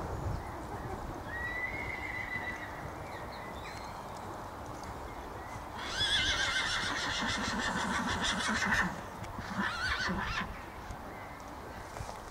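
A horse whinnying: one long, quavering call of nearly three seconds about halfway through, then a shorter second call about a second later.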